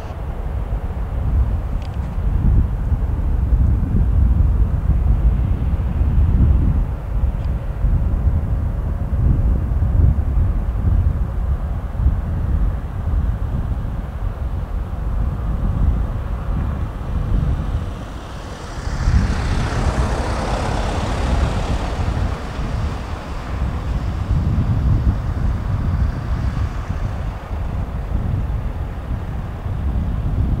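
Low rumble of an Emirates Boeing 777-300ER's GE90-115B turbofans as it climbs away after take-off, with wind noise on the microphone. A brighter rushing swell comes in about two-thirds of the way through.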